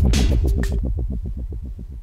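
A 90 BPM dubstep track coming to its end. The drums drop out about two-thirds of a second in, leaving a rapidly repeating bass pulse that fades away.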